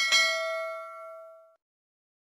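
Notification-bell ding sound effect as the bell icon is clicked: one bright, bell-like chime with several tones that rings and fades out over about a second and a half.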